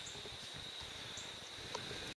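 Quiet outdoor background: a faint even hiss with a steady high-pitched tone throughout, and a couple of faint clicks.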